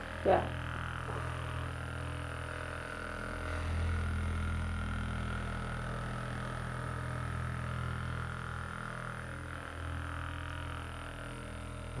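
Handheld percussion massage gun buzzing steadily as it is pressed into the muscles of a person's upper back, swelling a little about four seconds in.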